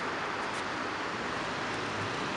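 Steady hiss of traffic at a city intersection, with tyres on wet, slushy pavement, even and unbroken.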